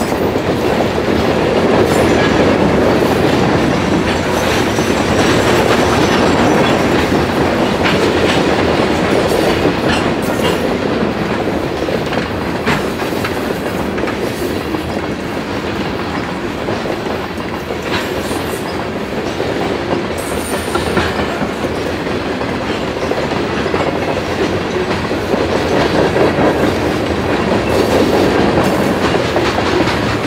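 Reading & Northern coal hopper cars rolling past at close range: a steady rumble of wheels on rail, with occasional sharp clicks from the wheels over the rail joints.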